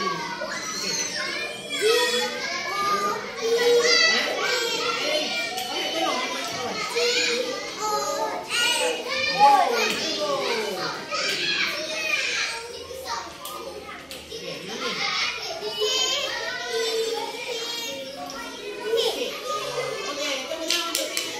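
Young children's voices speaking over one another, sounding out letters and syllables as they build words on letter puzzles, with an adult voice among them.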